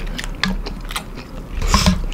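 Close-miked chewing of a mouthful of kimchi noodle soup: wet mouth clicks and soft crunches. Near the end comes a louder moment with a brief clink, likely the ceramic spoon against the bowl.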